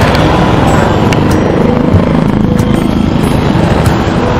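Motorcycle running while riding along a street, with loud, steady wind rumble on the bike-mounted microphone.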